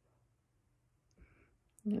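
Quiet room, then a soft mouth sound about a second in and a sharp lip click just before a woman says "Yep" at the very end.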